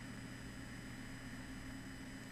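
Steady low background hiss with a faint hum: room tone.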